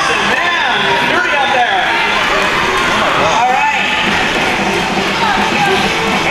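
Roller derby crowd cheering and shouting, many voices overlapping into a continuous din.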